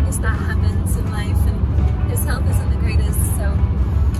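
Steady low rumble of road and engine noise inside a car's cabin at highway speed, with a woman talking over it.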